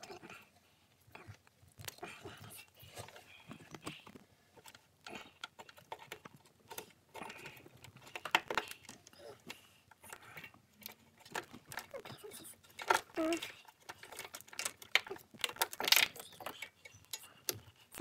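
Irregular plastic clicks and rattles of wiring-harness connectors and clips being handled and unplugged by hand, with a few sharper clicks.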